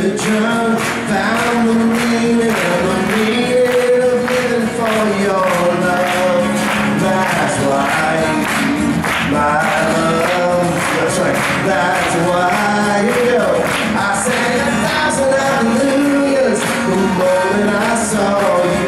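Live acoustic music: acoustic guitars strummed in a steady rhythm under sung vocals.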